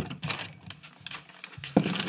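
Handling noise of a knocked-off Deity shotgun microphone being grabbed and put back on its boom: a run of small clicks and rustles, with a sharper knock near the end.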